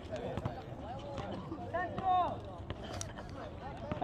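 Faint, distant men's voices calling out across an outdoor basketball court, one short call clearest about halfway through, over low background noise, with a few faint knocks scattered through.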